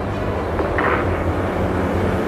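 Rocket launch just after ignition and liftoff: a steady, deep rumble from the rocket engines, with a short higher burst about a second in.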